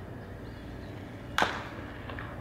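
A pitched baseball smacking into the catcher's mitt: one sharp, loud pop about one and a half seconds in, with a short ring after it.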